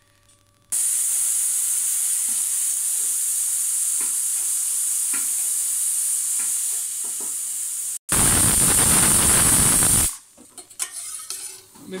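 Aluminium pressure cooker whistling, venting steam through its weighted valve: a steady high hiss for about seven seconds, then after an abrupt break a louder, fuller hiss for about two seconds. The whistle shows the cooker is up to pressure as the red lentils cook soft.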